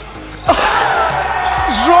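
Sudden burst of excited shouting about half a second in, as a three-pointer goes in during a basketball game, with the commentator's excited voice near the end.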